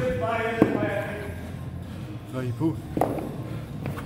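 Rubber bumper plates knocking as they are pulled off a barbell's steel sleeve and set down. There are two sharp knocks, about half a second in and about three seconds in.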